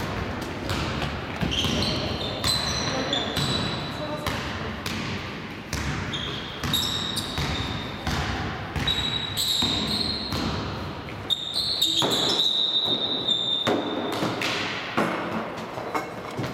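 Basketball game sounds on a sports-hall court: the ball bouncing, sneakers squeaking again and again in short high chirps, and players' voices calling out.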